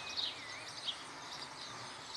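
Faint outdoor ambience with birds chirping: several short, high chirps scattered over a steady background hiss.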